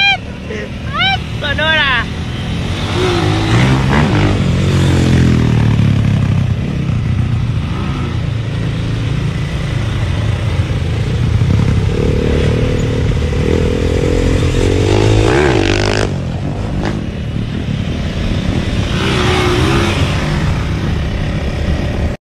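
Small street motorcycle engine running and revving as it is ridden off, its pitch rising and falling with the throttle. People laugh and talk around it.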